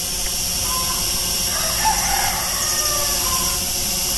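SG900-S GPS quadcopter hovering, its motors and propellers giving a steady whine.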